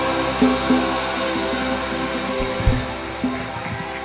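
Live gospel band playing an instrumental passage with no singing: held chords and a few struck low notes over a high hissing wash that slowly fades.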